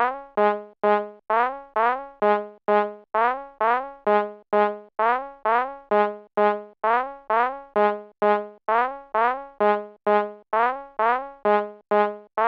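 Opening of an instrumental trap beat: a lone synth melody of short, quickly decaying notes, about two a second, with no drums yet.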